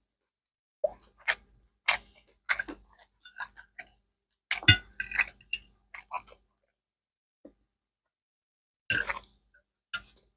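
Eating sounds: a metal fork clicking and clinking against a plate as noodles are twirled, with chewing and mouth sounds between. A busier, louder run of clinks comes around the middle, then a pause of about two seconds before one sharp clink near the end.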